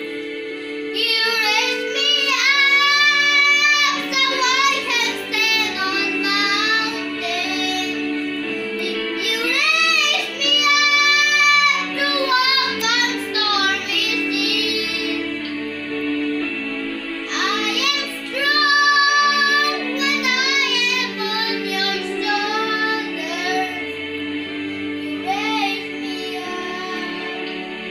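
A young boy singing a solo over a steady instrumental backing track, in sung phrases with long held notes that waver in pitch.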